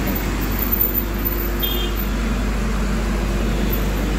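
Steady outdoor background noise: a constant low rumble under an even hiss, with no distinct events.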